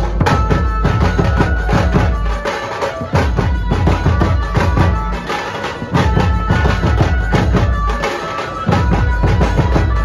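Loud Dhumal band music: dense, fast drumming over heavy bass, with a melody of sustained notes on top.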